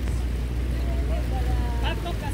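Steady low drone of a small boat's outboard motor running as the boat crosses the water, with a faint voice near the end.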